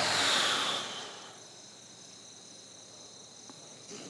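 A breathy exhale fades out over the first second, leaving faint, steady, high-pitched insect chirring, typical of crickets.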